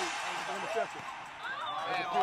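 Faint chatter and calls from a group of children and coaches, several voices overlapping.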